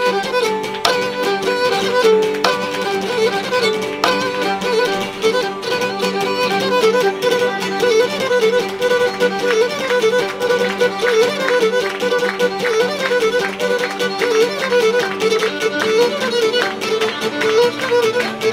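Cretan lyra playing an ornamented instrumental melody, accompanied by two laouta strumming and plucking chords.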